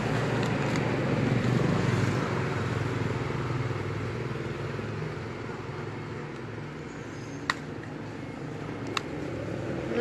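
An engine running nearby, a steady low hum that slowly fades over several seconds, with two short sharp clicks near the end.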